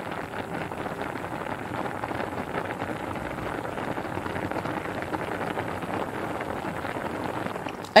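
A pan of pasta boiling in water: a steady crackling bubble of many small pops that stops just before the end.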